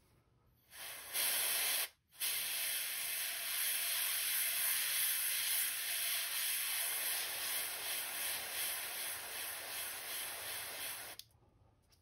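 Airbrush spraying paint: a steady hiss of air that starts about a second in, cuts out briefly, then runs for about nine seconds before stopping near the end.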